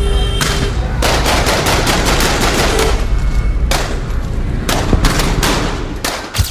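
Rapid gunfire: many shots in quick, irregular succession, over music with a heavy bass.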